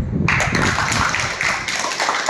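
A group of children clapping their hands, starting abruptly about a quarter second in as a dense, uneven patter of claps.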